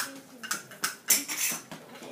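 Children playing small classroom percussion instruments in a rhythmic pattern, with a louder, denser group of hits about a second in.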